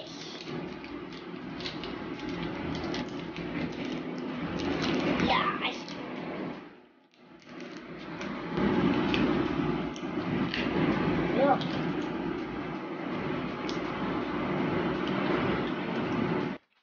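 A child's voice making a few short, indistinct sounds over a steady background noise that drops away briefly about seven seconds in.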